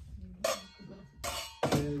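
Stainless steel cooking pot of a thermal cooker clinking against its metal housing as it is lifted and handled, two metallic knocks that ring on briefly, about half a second in and again past the middle.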